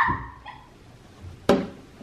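A brief rising high-pitched cry from a toddler that fades quickly, then a single sharp knock about one and a half seconds in.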